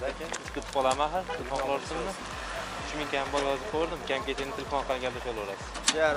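Men talking, their speech going on with short pauses.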